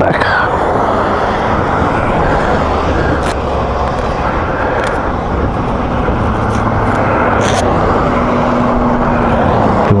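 Steady roadside rumble of motor vehicles with a low engine hum that comes and goes, and a few light clicks.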